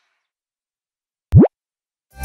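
A single short cartoon sound effect, a quick pop that sweeps sharply upward in pitch, about a second and a half in.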